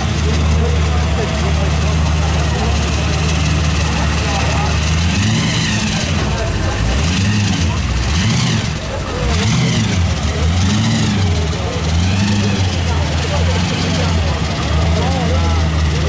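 A car engine idles steadily, then revs in about six throttle blips, each rising and falling, one every second or so, before settling back to idle near the end.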